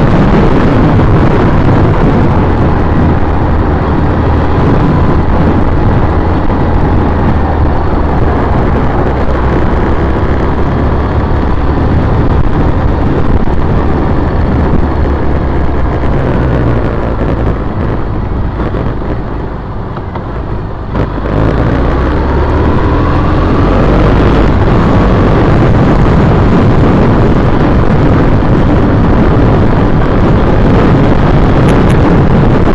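2010 Triumph Bonneville T100's 865 cc air-cooled parallel-twin engine running steadily under way in traffic. About two-thirds of the way through it eases off into a quieter lull as the bike slows, then pulls again with a rising pitch as it accelerates.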